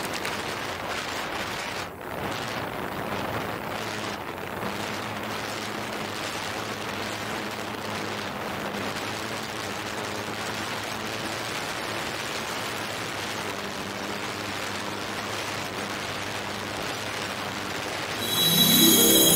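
DJI Phantom 4 quadcopter in flight, heard through the 360° camera mounted on it: a steady rush of propeller wash and wind noise over a faint low rotor hum, with a brief dip about two seconds in.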